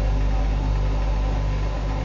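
A steady low mechanical hum with an even hiss over it, unchanging throughout.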